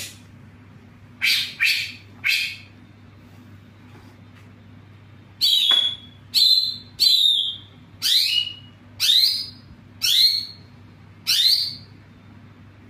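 Caged songbird giving a series of sharp, falling chirps: three in quick succession, a pause of about three seconds, then seven more at about one a second, over a faint steady low hum.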